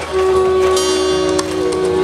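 Transverse flute playing long held notes, over a steady low accompaniment.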